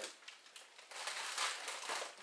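Rustling and crinkling of frozen meat packages wrapped in plastic freezer bags and freezer paper as they are handled in a chest freezer, strongest through the second half.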